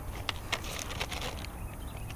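A few faint clicks and rattles from a lip-grip fish scale's chain and jaws as a bass hangs from it, over a low steady rumble.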